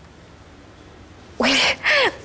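A woman's short startled exclamation "Ой", about one and a half seconds in, after a quiet stretch of room tone.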